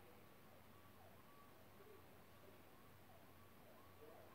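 Near silence, with a faint distant siren wailing up and down over a low steady hum.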